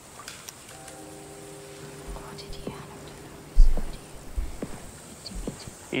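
A quiet stretch with a soft, steady low hum held for about three seconds, scattered small clicks, and one dull thump a little past halfway.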